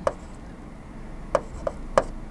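Pen tip tapping and scraping on a writing board as a word is handwritten, with a few short sharp taps in the second half.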